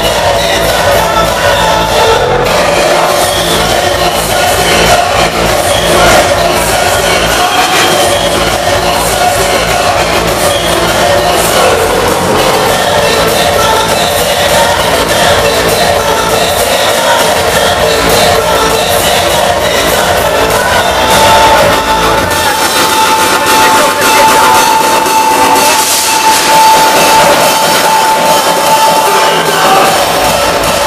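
Hardstyle played loud over a club sound system, with a steady pounding kick drum. About two-thirds of the way through, the kick and bass drop out into a breakdown carried by a held synth note.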